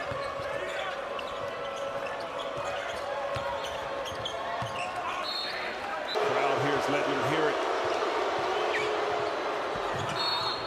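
Live basketball court sound: the ball dribbled on a hardwood floor and sneakers squeaking, over arena crowd noise that gets louder about six seconds in.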